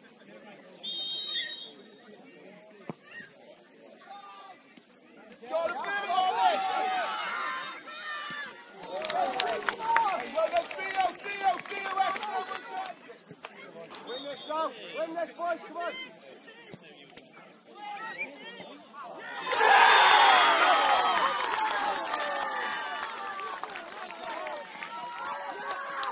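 Players and touchline spectators shouting across an open football pitch, in scattered calls. About twenty seconds in, a loud burst of many voices shouting and cheering breaks out as a goal goes in, then tails off.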